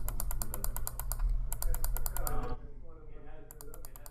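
Rapid, evenly spaced small clicks from a computer mouse being worked at the desk, about ten a second, in two runs and then a short burst near the end, over a steady low hum.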